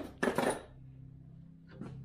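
A sharp click, then a brief metallic clatter of small metal hardware or tools being handled, about half a second long.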